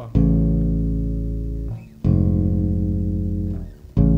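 Five-string electric bass playing two chords a major third apart, A major then F minor, each struck once and left to ring for about a second and a half. The move leaves the harmonic field, which is called the strangest of all these movements.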